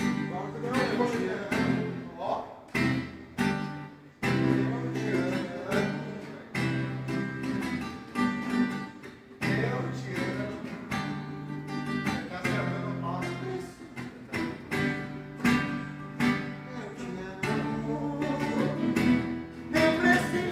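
Solo acoustic guitar playing, with strummed and plucked chord phrases and short breaks between them.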